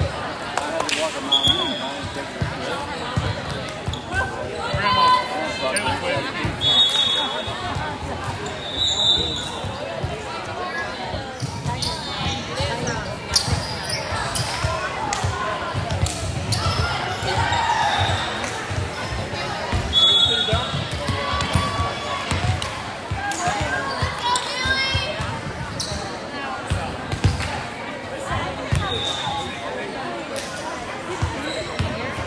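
Echoing sports-hall din: volleyballs repeatedly struck and bouncing on the hardwood floor amid the voices of players and spectators, with short high squeaks now and then.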